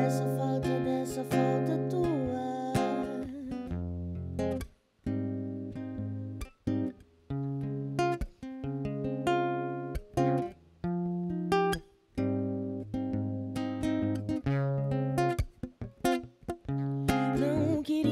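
Nylon-string classical guitar fingerpicked in an instrumental break of a voice-and-guitar song. The phrases are broken by a few short pauses.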